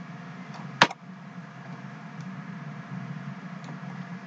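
Steady low background hum from the recording, with a single sharp mouse click about a second in.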